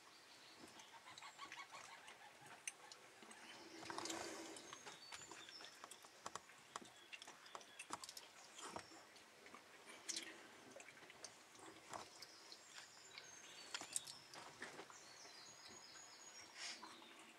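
Near silence: faint outdoor quiet with scattered small clicks and a few brief, high bird chirps, mostly in the second half.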